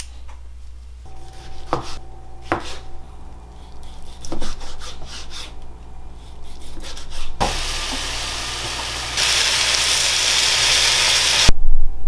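Kitchen sounds: a few scattered knocks and clinks of utensils, then, about seven seconds in, loud sizzling of chicken frying in a pan. The sizzling grows louder about two seconds later and cuts off suddenly near the end.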